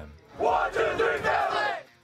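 A soccer team shouting together as they break a huddle, many voices at once for about a second and a half, starting about half a second in.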